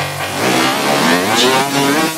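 Electronic techno music: a sweeping synth effect whose many tones glide up and down in pitch, over a low held note.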